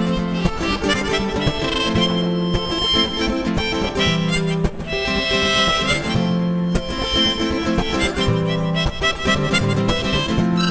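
Harmonica solo playing over a steady strummed guitar rhythm, in an instrumental break between sung verses.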